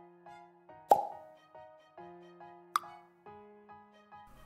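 Light background music with a quick, even pulse of short notes, broken by two sharp pops about two seconds apart, the first the louder: the click sound effects of an on-screen subscribe-button animation.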